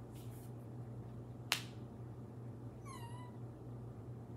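A sharp click about a second and a half in, then a short high-pitched cry that dips slightly and levels off near the end, over a steady low hum.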